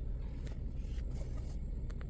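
Steady low hum inside a car's cabin, with a couple of faint clicks near the end.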